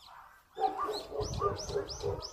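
A dog whining in a quick run of about five short calls, each rising and falling in pitch, starting about half a second in.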